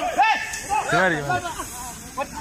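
Men shouting in alarm, several short high-pitched calls that rise and fall, over a steady faint hiss.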